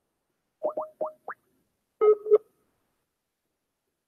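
Skype app call sounds: four quick rising electronic bloops, then a short steady electronic beep about two seconds in, as a call is placed to a contact who turns out to be offline.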